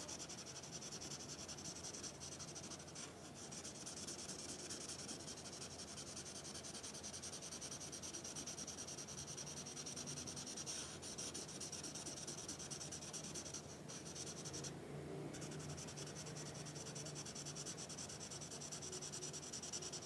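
Felt-tip marker scratching and rubbing on paper in rapid back-and-forth strokes as an area is coloured in solid. Faint and steady, with a few brief pauses between bursts of strokes.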